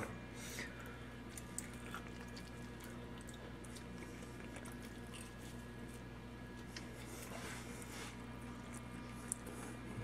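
Faint chewing of a bite of smoked pork rib, with a few soft clicks, over a steady low hum.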